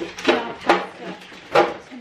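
Groceries being lifted out of a paper shopping bag and put down on a kitchen counter: paper rustling and a few sharp knocks, the loudest near the end.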